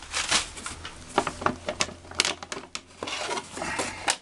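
Cardboard packaging handled inside a cardboard shipping box: boxed model trucks rubbing and tapping against each other and the box walls as one is lifted out, with packing paper crinkling. A string of short, irregular rustles and taps.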